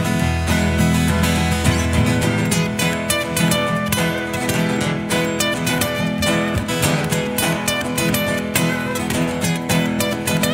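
Acoustic guitar playing an instrumental break in an up-tempo country song: steady strumming with quick picked notes over it, no singing.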